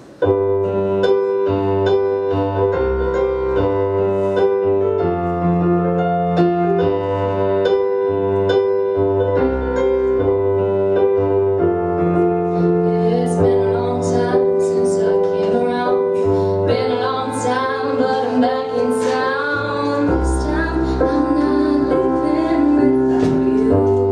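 Roland digital piano played live: a slow, sustained chordal accompaniment with low bass notes, the chords changing every second or two.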